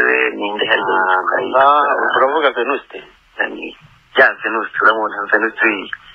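Speech only: a person talking continuously, with brief pauses.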